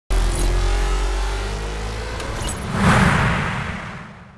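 Cinematic logo-sting sound design: a deep bass drone with a slowly rising tone underneath, swelling into a whoosh about three seconds in, then fading away.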